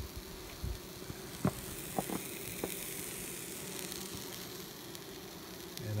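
ProVap oxalic acid vaporizer sizzling steadily as it vaporizes oxalic acid into a beehive entrance to treat the colony, over the low hum of the honeybees inside, which are agitated by the fumes. A few faint clicks.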